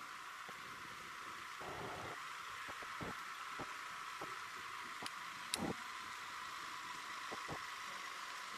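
Steady outdoor hiss with a few faint, scattered clicks.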